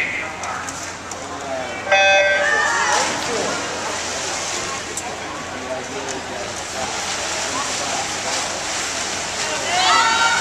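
An electronic starting beep sounds once, briefly, about two seconds in, signalling the start of a swimming race. It is followed by splashing water and shouting voices of spectators and teammates.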